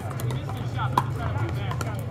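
Pickleball paddles hitting the hard plastic ball in a rally: a string of sharp pops, the loudest about a second in.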